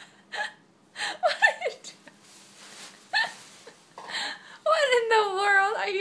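Playful high-pitched voice sounds: a few short squeaky calls with falling pitch, then a long wavering drawn-out vocal sound near the end.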